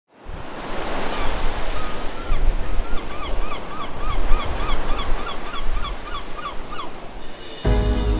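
Ocean surf washing in a steady rushing noise while a bird gives a quick series of short hooked calls, about three a second. Music starts suddenly near the end.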